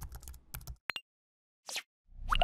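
Keyboard typing sound effect: a quick run of key clicks that stops about a second in, followed by a short click near the end.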